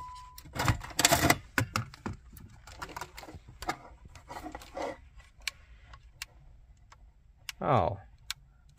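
Plastic wiring-harness connectors pushed into the back of an aftermarket car radio, with loud clicks and knocks about a second in, then scattered lighter plastic clicks as the unit is handled. A steady high electronic beep cuts off about half a second in.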